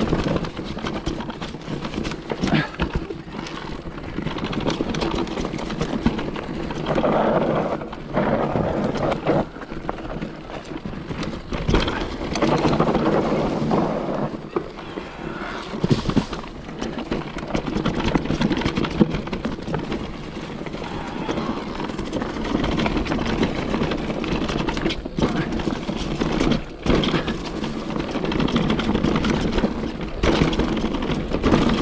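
Electric mountain bike ridden over a dirt and rock forest singletrack: tyre noise over the ground with frequent irregular knocks and rattles from the bike as it rolls over bumps, and the loudness rising and falling with the terrain.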